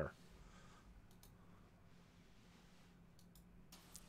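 Near silence broken by a few faint clicks of a computer mouse, in two pairs about two seconds apart.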